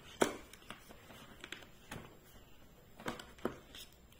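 Handling noise: a few light clicks and taps as a small glass nail polish bottle is pulled out of its cardboard tray insert, the loudest just after the start.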